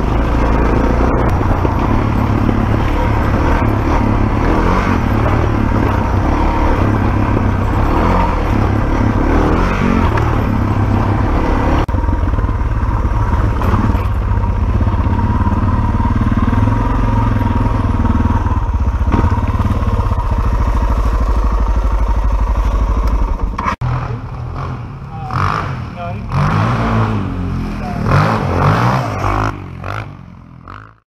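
Dirt bike engine running steadily under way on a trail, heard loud and close from the riding bike. It cuts off abruptly about three-quarters of the way through, giving way to quieter, uneven engine sound and voices.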